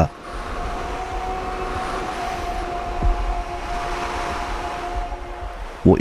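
Steady background ambience: a low rumble and an even hiss with two faint held tones, unchanging until the narrator's voice comes back near the end.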